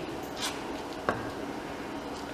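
Kitchen handling while a pastry board is floured: a short soft rustle about half a second in and a light tap just after one second, over a steady faint hiss.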